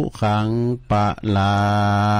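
A Buddhist monk chants in Pali in a low, even male voice, closing the blessing verse with "sukhaṃ balaṃ". The pitch stays level throughout, and the last syllable is held for over a second near the end.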